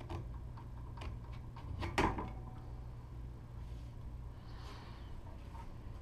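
Clicks and one sharp knock about two seconds in, then faint rubbing, as the wound mandrel is handled and taken off the filament winder.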